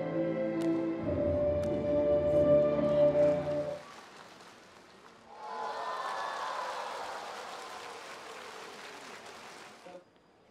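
Instrumental music with held notes plays and stops about four seconds in. A second or so later applause starts and slowly fades away.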